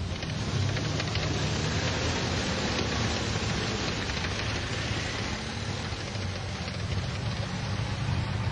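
Tank engines and tracks running: a steady low drone under a dense hiss that holds even throughout.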